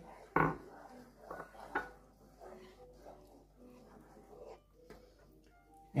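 Wooden spoon stirring a thick cream sauce in a nonstick frying pan: one sharp knock about half a second in, then faint scrapes and soft clicks.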